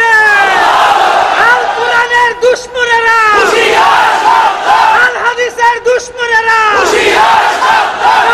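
A man's voice chanting in a sung, wavering tune into microphones, with long held notes broken by short pauses.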